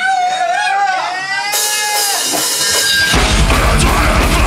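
Melodic death metal band starting a song: electric guitar plays wailing notes that bend up and down in pitch, a wash of cymbals joins about one and a half seconds in, and the full band with fast heavy drums and bass crashes in about three seconds in.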